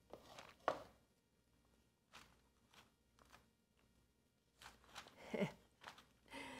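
Faint, sparse clicks and scrapes of a metal spoon against a food processor bowl as sticky cheese dough is scooped out, with a short falling voiced sound, like a hum or sigh, near the end.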